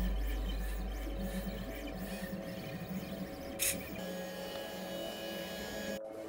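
Stepper motors of the Vision pen-plotting drawing robot whirring in short, stepped tones that start, stop and change as the pen traces outlines, with one short click about three and a half seconds in. Background music fades out underneath.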